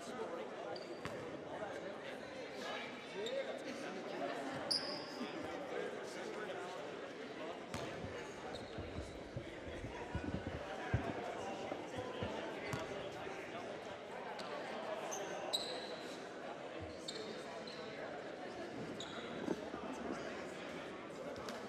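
Gym ambience during a stoppage in play: a steady murmur of voices from spectators and players, and a basketball bounced on the hardwood floor several times around the middle. A few short high squeaks are heard as well.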